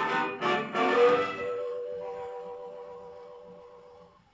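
The closing bars of a 1931 British dance-band record played from a 78 rpm shellac disc on a gramophone: a few short accented band chords in the first second, then a last held chord that fades away.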